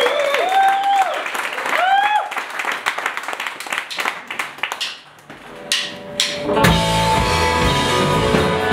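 Audience clapping and cheering with whoops, dying away over the first few seconds. After a short lull come two sharp clicks, and about six and a half seconds in a rock band of electric and acoustic guitars, bass and drum kit starts playing the song.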